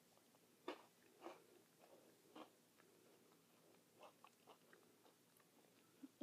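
Faint, irregular crunches of someone biting into and chewing a strawberry Pocky Midi, a short, thick cream-coated biscuit stick.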